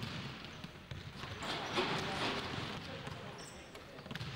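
A basketball bouncing on a hardwood gym floor during a game, mixed with players' indistinct voices, with a busier stretch about a second or two in.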